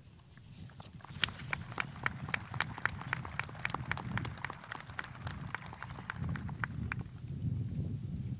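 Scattered applause: a small number of people clapping in sharp, irregular claps that die away about seven seconds in, with a low wind rumble on the microphone near the end.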